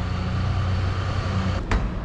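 Steady low rumble of city traffic, with a single sharp click near the end.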